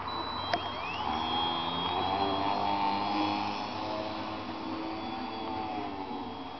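Electric motor and propeller of a small foam RC aerobatic plane, with a click about half a second in. About a second in it winds up in a rising whine, then runs steadily at a high pitch.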